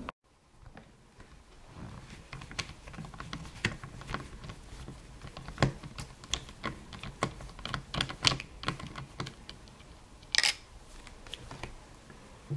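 Small Phillips screwdriver turning out a screw from a laptop's plastic screen bezel: an irregular run of light clicks and ticks from the bit and tool, with a sharper click cluster near the end.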